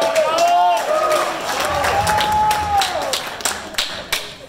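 Audience whooping and cheering, several voices overlapping in long rising and falling "woo" calls, with scattered clapping that grows toward the end.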